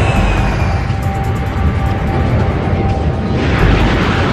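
Documentary background music over the steady noise of jet engines as a four-engine jetliner takes off.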